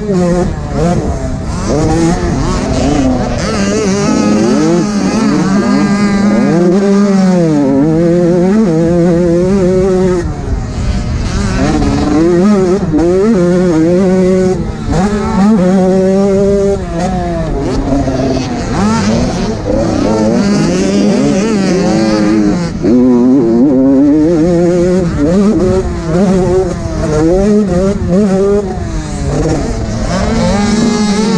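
Two-stroke 85 cc motocross bike engine, heard up close from the rider's helmet, revving hard and dropping back over and over, its pitch rising and falling through the whole stretch.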